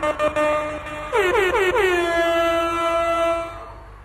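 Loud horn blasts sliding down in pitch, four in quick succession, merging into one held note that dies away shortly before the end.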